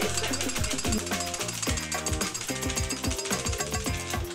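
A cleaver chopping rock candy sticks against a cutting block in rapid, regular strokes, over background music.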